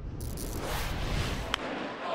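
Transition whoosh sound effect for a broadcast graphic: a rushing swell that starts about a quarter second in and fades away over a low rumble, with one short sharp click near the end.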